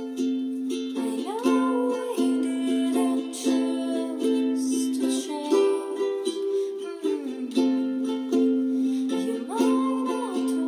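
A woman singing a slow song to her own strummed ukulele, the chords ringing steadily under her voice. A sung note rises and is held about a second in, and again near the end.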